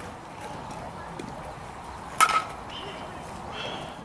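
Baseball bat striking a pitched ball: one sharp crack with a brief ring, a bit over two seconds in.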